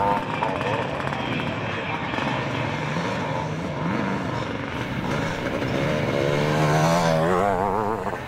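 Classic motocross motorcycles racing, engines revving with the pitch rising and falling as the throttle is worked. Near the end a bike revs harder in a quick wavering climb.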